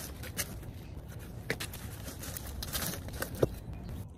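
Footsteps on brick steps: a few light taps and scuffs, the sharpest about three and a half seconds in, over a steady low background rumble.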